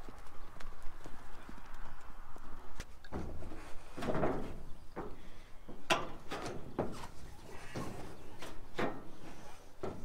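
Irregular knocks and clunks on corrugated metal roofing sheets as a worker moves along the roof and handles his cordless drill. The sounds come singly, about one a second from roughly three seconds in, with no drill running.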